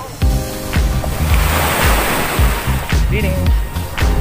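Waves washing onto a sandy shore, the surf noise swelling to its loudest about two seconds in, under background music with a steady bass beat.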